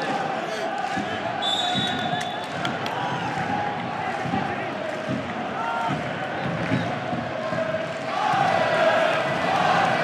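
Football stadium crowd, many voices singing and chanting from the stands, growing louder about eight seconds in.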